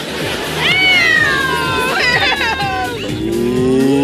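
A person mooing like a cow: three long drawn-out moos, the first two high and sliding downward in pitch, the last one deeper, rising and then falling, over background party music.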